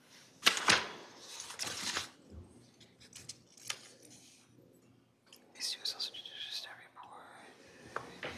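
Soft, indistinct talk, some of it whispered, in short bursts with near-silent gaps between them.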